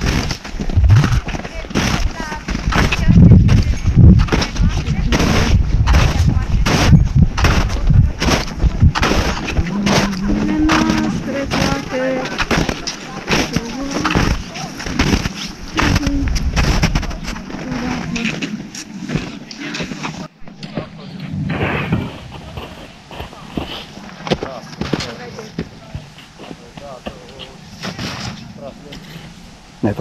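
Footsteps crunching in snow at a steady walking pace, a short sharp crunch with each step. Wind rumbles on the microphone through the first two-thirds and stops near the end, leaving the steps quieter. Faint voices come through now and then.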